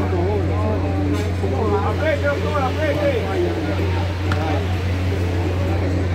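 Players' voices calling out across a football pitch, unclear words rising and falling, loudest between about two and three seconds in, over a steady low hum.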